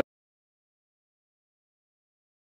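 Dead silence: the sound track drops out completely, with no audio at all.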